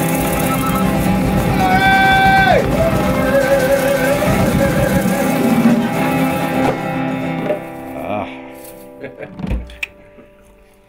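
Live acoustic band ending a song: acoustic guitar, hand drum, shaker and voices, with a long held high note that falls away about two and a half seconds in. The music then rings out and fades by about seven seconds, leaving a few short sounds.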